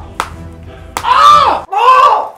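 Faint background music for the first second, then two loud yells of "ah" from a man in discomfort, each rising and falling in pitch.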